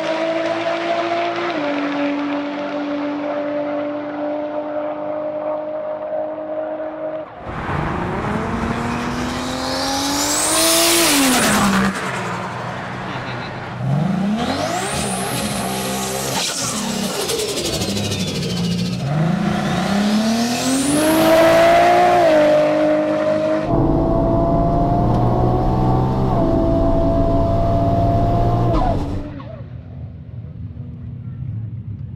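Turbocharged 2JZ six-cylinder engine of a Lexus SC300 drag car in several cut-together runs: a steady engine tone at first, then three climbs in revs, each with a high turbo whistle rising with it, and a steadier loud run that cuts off just before the end.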